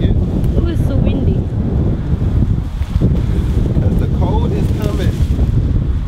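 Wind buffeting the microphone: a loud, low, gusting rumble.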